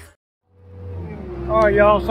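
A brief dead silence at an edit, then the steady low run of a Bobcat T190 compact track loader's diesel engine fades in, heard from the operator's seat. A man starts talking over it near the end.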